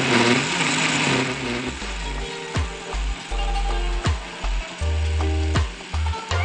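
Kenwood countertop blender running at speed, blending fruit, ice cream and coconut milk into a smoothie; the motor stops about two seconds in and background music with a steady beat takes over.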